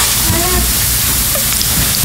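A steady hiss that fills the pause in speech, with a faint voice briefly under it about half a second in.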